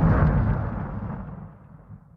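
Explosion sound effect from an intro animation: the tail of a deep boom, its low rumble dying away steadily over about two seconds until it fades out.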